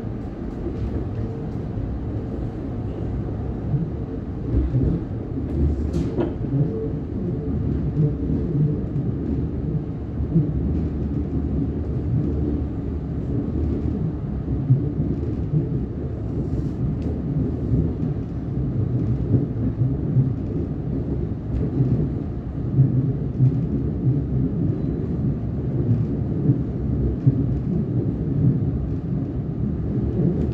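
Steady low rumble of a Siemens Nexas electric train running along the track, heard from inside the carriage, with scattered light clicks and a brief sharp sound about six seconds in.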